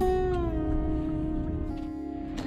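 Background instrumental music: a held note that slides slowly down in pitch, then settles and fades, over a low rumble.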